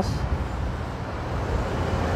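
Steady low rumble of engines and city traffic noise around a construction site, with no distinct knocks or clanks.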